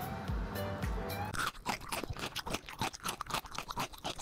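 Background music with a low beat, then from about a second and a half in, rapid, irregular crunching of crunchy food being chewed close to the microphone.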